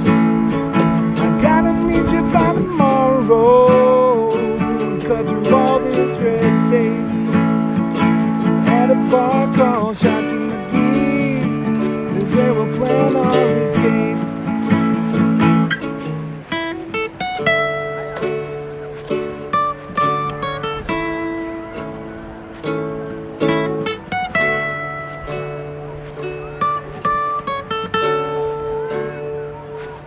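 Acoustic guitar and ukulele played together in an instrumental break: full strumming for about the first half, then quieter and sparser picked notes.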